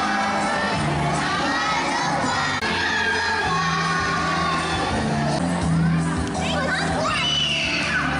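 A group of young children singing and shouting together over backing music.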